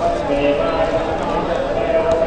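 Voices: a man chanting in a steady, held pitch, with faint clicks and knocks behind.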